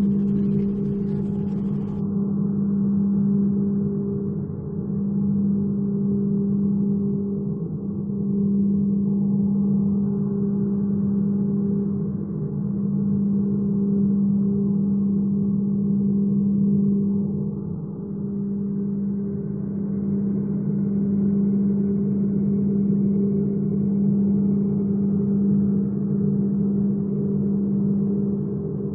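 Steady low drone of an ambient soundtrack: a hum held on two pitches, swelling and easing gently every few seconds.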